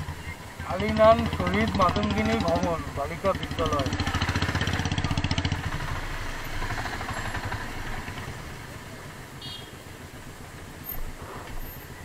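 Motorcycle engine running at low speed with a quick, even pulsing beat. People talk over it for the first few seconds, and the engine sound fades after about six seconds.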